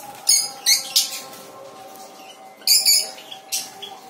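Small parrots giving sharp, shrill calls: three in the first second, then three more near the end.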